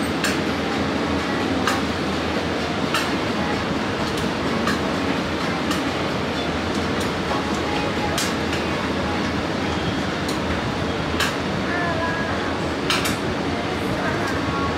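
Metal tongs clicking and clinking against a steel cold plate as rolled ice cream is picked up and dropped into a cup, a sharp tick every second or two, over a steady background rumble.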